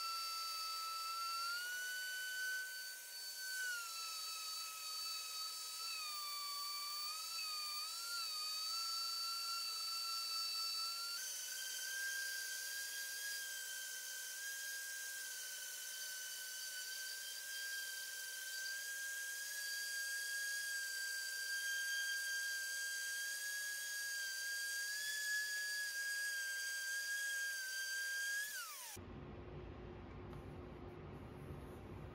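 SKIL random orbital sander with a dust-extraction hose attached, running with a steady high-pitched whine while sanding white latex paint off a wooden dresser top. The whine wavers in pitch in the first few seconds and steps slightly higher about eleven seconds in. Near the end it drops in pitch and stops as the motor winds down.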